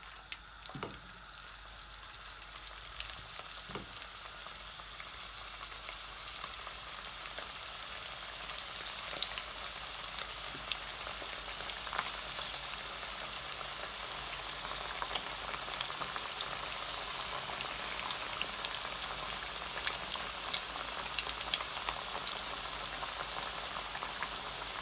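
Tuna kebab patties shallow-frying in hot oil in a pan: a steady sizzle with scattered crackles and pops, growing louder as more patties go into the oil.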